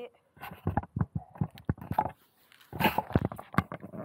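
Close-up handling noise: fingers tapping, knocking and rubbing on the camera and the RC car's plastic parts. It comes as an irregular run of sharp clicks and taps with short gaps between them.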